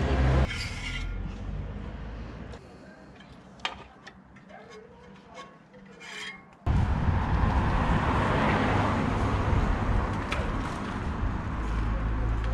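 Hands working a FiberFix emergency cord spoke into a bicycle's rear wheel: light rubbing and a few small metallic clicks. From about seven seconds in, a loud, steady rushing noise with a low rumble comes in suddenly and covers them.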